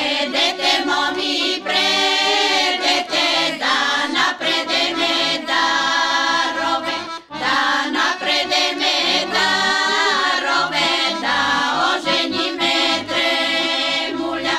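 Choir of women singing a Bulgarian folk song in strong full voices, in two long phrases with a brief break about seven seconds in.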